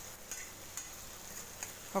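Sliced potatoes and onion faintly sizzling as they are stir-fried in a pan, with a spatula scraping and clicking against the pan a few times.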